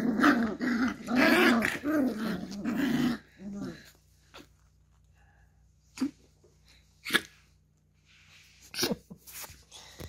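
Beagle puppies growling and yapping while they play-fight, a loud run of high-pitched growls through the first few seconds. After that there are only a few short, sharp sounds spread apart.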